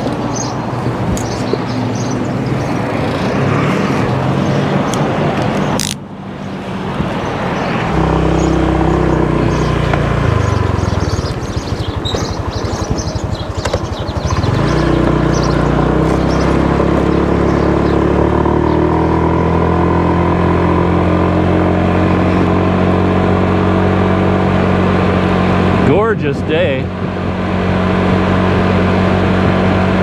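Motor scooter engine running on the move, with wind and road noise. About ten seconds in, the engine note falls as the scooter slows almost to idle, then rises sharply as it speeds up again and settles into a steady cruise. There is a sudden break in the sound about six seconds in.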